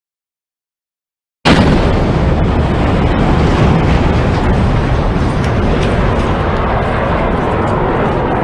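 Explosion of a missile striking a target barge at sea: a sudden loud blast about a second and a half in, followed by a continuous noisy rumble that barely dies away.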